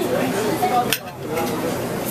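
A single sharp clink of cutlery against a dinner plate about a second in, over a background of restaurant chatter.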